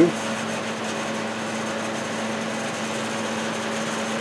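AC Infinity Airlift T16 shutter exhaust fan running after being switched on, a steady, even motor hum.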